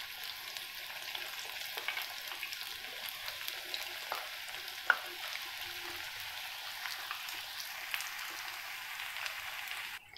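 Bread slices deep-frying in hot oil in a pan: a steady sizzle with scattered small pops and crackles, and one sharper pop about halfway through.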